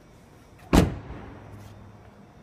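A 2009 Hyundai Tucson's car door slammed shut once: a single sharp thud about three quarters of a second in, with a short ringing tail.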